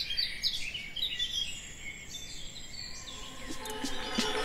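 Small birds chirping: many short, quick chirps over faint outdoor background noise.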